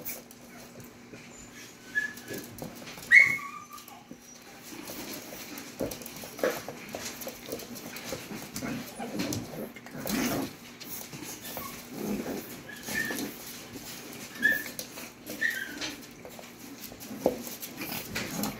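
Boston terrier and miniature poodle puppies play-fighting: scuffling and scrabbling on a wooden floor, with a handful of short, high-pitched squeaky yips and whimpers scattered through.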